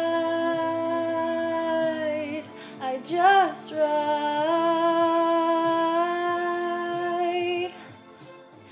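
A woman singing long sustained notes: one held for about two and a half seconds, a short note about three seconds in, then another held for about three and a half seconds that stops just before the end.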